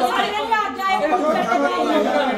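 Several people talking over one another in a large room: indistinct speech only.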